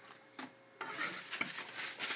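Rustling and a few light clicks of hands handling a soft zippered camera case and unboxed items on a wooden tabletop, starting a little under a second in after a single small click.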